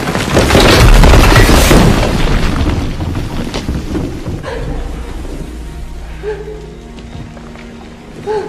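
A loud, deep boom and rumble that peaks about a second in, then dies away over about five seconds, with music playing.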